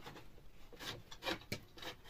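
Hand-worked scraping and rubbing against wooden ceiling planks as a small piece is pushed into the gaps between them, in a few short, faint strokes.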